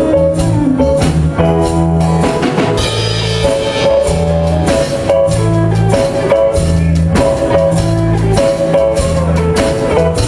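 Live band playing an instrumental blues passage: electric bass, guitar and drum kit with a steady beat, no vocals.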